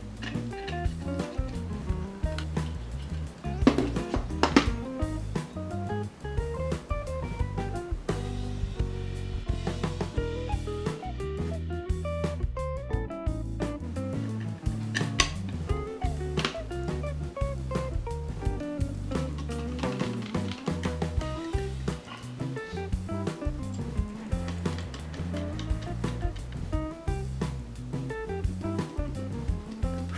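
Background music: a melodic tune with guitar over a steady beat.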